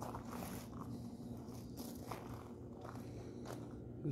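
Faint scuffs and rustles from a handheld camera being carried on foot, with a low steady hum underneath.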